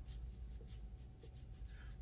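A quiet pause: a faint, steady low hum with light rustling and small scratching sounds.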